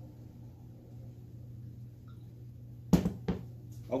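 A faint steady low hum, then about three seconds in two sharp knocks a fraction of a second apart and a fainter third: objects being handled and set down on a hard bar counter.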